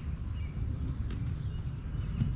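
Footsteps and ball touches of a player dribbling a soccer ball on artificial turf: a few faint taps over a steady low rumble.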